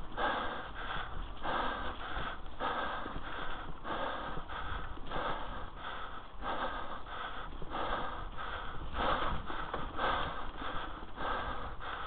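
Hard, fast breathing of a mountain biker riding a forest trail, a breath about every half second to a second, over the low rumble of the bike rolling on the dirt.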